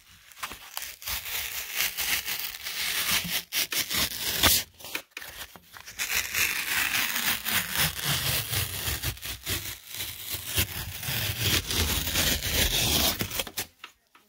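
Fingertips scratching and rubbing a broken piece of drywall, a dry, crackly scraping on its paper face and crumbling gypsum edge. The first half is scattered sharp crackles. From about halfway it turns into denser, steady scratching, and it stops abruptly at the end.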